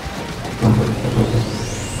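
Rain and thunder sound effect in a pop track's break: a steady rain hiss with low rumbles. A rising whine climbs through the second half.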